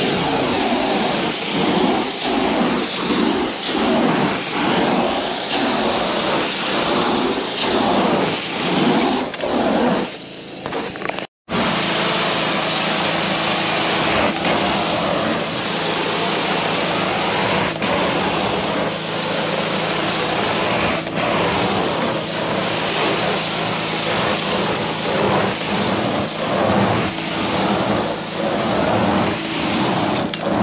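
Truck-mounted carpet cleaner's extraction wand running over carpet, its suction rising and falling with each stroke. The sound dips and cuts out briefly about eleven seconds in, then carries on more steadily over a low hum.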